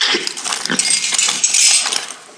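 Loud, continuous crunching and cracking of a ceramic plate being bitten and chewed, thick with small sharp cracks.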